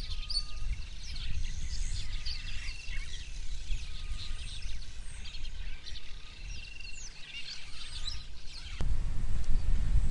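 Birds chirping and calling in the bush: many short high chirps and a few brief whistled notes. A low rumble sits under them and grows louder near the end.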